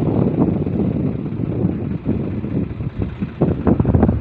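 Wind buffeting the phone's microphone: a loud, uneven low rumble, with a few sharper crackles near the end.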